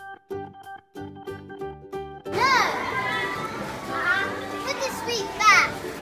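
Background music with a plucked, rhythmic beat for the first two seconds or so. Then busy supermarket ambience with a child's high-pitched squealing calls that rise and fall, the loudest near the end.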